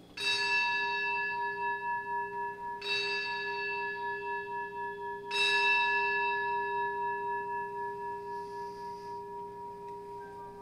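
A single bell struck three times, evenly spaced about two and a half seconds apart. Each stroke rings on with a bright, clear tone, and the last fades slowly. It is the consecration bell rung at the elevation of the host.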